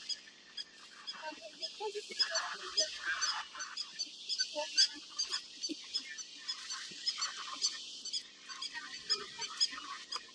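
A wildebeest herd giving nasal honking grunts, several calls overlapping, most around two to three seconds in. Under them runs a steady high insect chorus of rapid, regular chirps.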